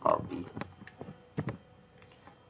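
A brief spoken syllable, then a handful of light, sharp clicks and taps from hand-drawing a circuit on a slide with a digital pen.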